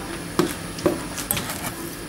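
Three light clicks about half a second apart, the first the loudest, over quiet room tone.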